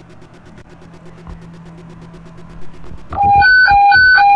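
Fire/EMS radio dispatch alert tone heard over a scanner: two pitches, low and high, alternate about every quarter second. It starts about three seconds in and leads into a dispatch call. Before it there is only a low steady hum.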